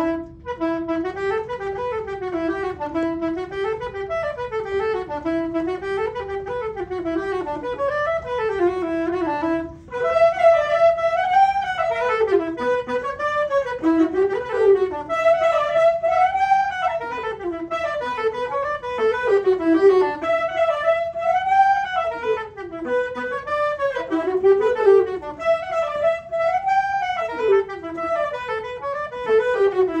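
A saxophone ensemble, a baritone saxophone among them, playing a piece together in repeating rising and falling phrases. There is a brief gap just after the start and a short break about ten seconds in, after which the playing is louder.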